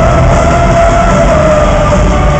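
Loud live heavy metal band performance: distorted guitars and drums under one long held note that wavers slightly in pitch.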